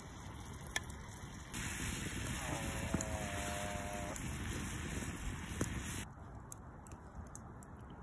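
Tomato and pepper sauce sizzling in a frying pan over a wood campfire, with a few sharp crackles from the fire. The sizzle is louder from about a second and a half in and drops back near the end.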